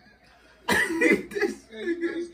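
A man coughing: two harsh bursts about a second in, then a voice.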